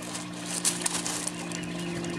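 Gravel stones clattering and grinding as a hand digs down into a flood-and-drain gravel grow bed, a few scattered clicks over a steady low hum.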